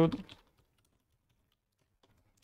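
Faint computer keyboard keystrokes, a few scattered light taps while a line of code is typed.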